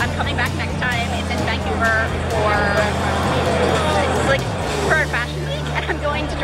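Voices talking over music with deep, sustained bass notes; the bass shifts to a new note about four seconds in.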